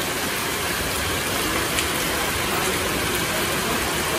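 Heavy rain falling steadily on foliage, roofs and the ground, an even hiss with a single sharp tap about two seconds in.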